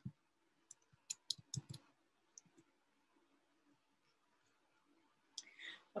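Faint, irregular clicks of a computer mouse and keyboard being worked, about eight in the first two and a half seconds, then near silence with a faint noise just before the end.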